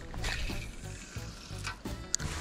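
Budget spinning reel being cranked during a retrieve, with a rough, gritty grinding from its gears: a sign of a cheaply built or poorly running reel.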